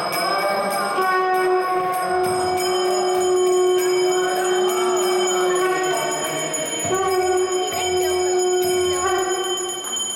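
A ritual hand bell ringing continuously. A long, steady note is held for about five seconds starting a second in, and held again for about two seconds near the end.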